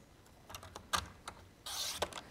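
Paper trimmer cutting a strip of cardstock. Light taps and clicks come as the card is lined up against the rail, then a short swish of the sliding blade through the card near the end.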